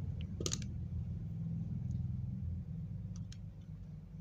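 Combination pliers handling a piece of copper wire: one sharp metallic click about half a second in and two faint ticks a little after three seconds, over a steady low hum.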